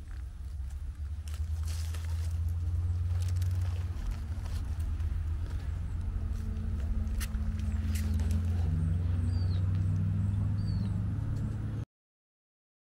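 A hand rustling and crackling through dry spruce needles and leaf litter on the forest floor, over a steady low rumble. A bird gives two short high chirps near the end, and the sound cuts off suddenly just before the end.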